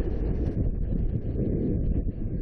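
Wind buffeting the onboard camera's microphone as the slingshot ride capsule swings through the air: a steady, low rushing noise.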